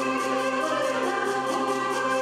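Adyghe folk song performed live: a woman singing lead with a choir, accompanied by piano accordion and flute, over a quick, even beat.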